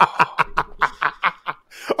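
Men laughing: a run of short chuckles that fades out about one and a half seconds in.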